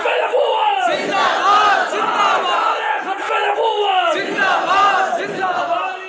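Large crowd of men shouting together in reply to a question from the stage, voicing their assent. The shouts come in loud waves about a second apart.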